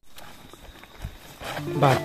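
Mostly quiet outdoor background with faint ticks, then a man's voice starts speaking near the end.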